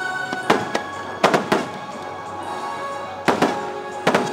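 Aerial fireworks shells bursting in sharp bangs, a quick run of them in the first second and a half and another pair near the end, over the show's sustained soundtrack music.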